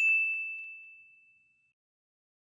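A single bright ding, a notification-bell chime sound effect, ringing and fading away over about a second and a half.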